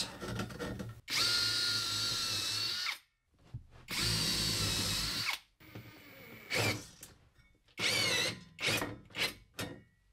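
Cordless drill running in bursts into a wooden wall while pre-drilling for and driving anchor bolts through a battery mounting bracket. There are two steady runs of a couple of seconds each, then several shorter bursts near the end.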